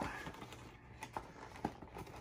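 Faint, scattered taps and small crinkles of a cardboard cereal box being handled as its top flap is folded and tucked in.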